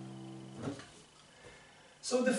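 The final C major chord of a piano phrase, over a low C pedal point, rings and fades. It is cut off about half a second in as the keys are released. A brief soft sound follows, then near silence.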